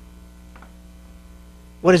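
Steady low electrical mains hum in the audio system, with no other sound over it until a man's voice starts just before the end.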